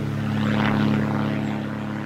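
A steady, low engine drone made of several held tones, a little louder around the first second.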